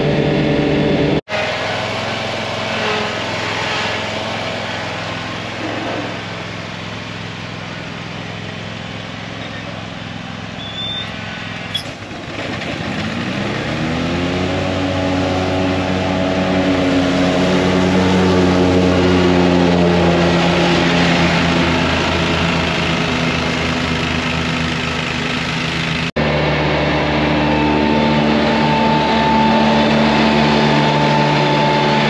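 John Deere mowers running: the Z970R zero-turn's engine rises in pitch about twelve seconds in, then runs steadily while mowing tall grass. Near the start and near the end, the 3046R compact tractor's three-cylinder diesel runs steadily with its 72-inch mid-mount deck cutting.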